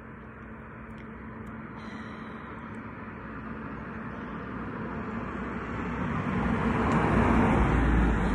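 A car approaching and passing, its road noise growing steadily louder to a deep rumble about seven seconds in.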